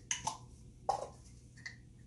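A few light clicks and knocks from a plastic measuring cup and an aerosol can of shaving cream being handled over a mixing bowl, the last one with a brief ring.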